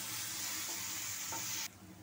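Onion and green chilli paste sizzling in hot oil in a nonstick kadai while a wooden spatula stirs it. The sizzle cuts off suddenly near the end.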